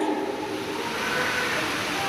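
Audience applause, a steady, even clapping of many hands that carries on until the speech resumes.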